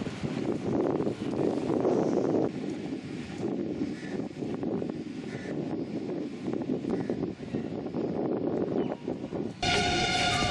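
Steady outdoor rumbling noise. Near the end it cuts off abruptly, replaced by a pitched, voice-like sound.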